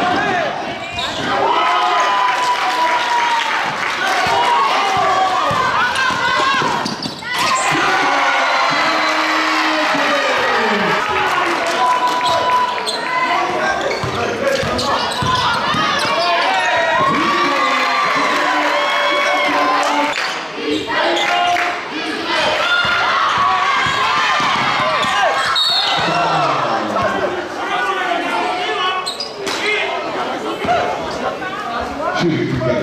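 Live sound of a basketball game in a gym: the ball bouncing on the wooden court amid indistinct shouting and calling from players and spectators.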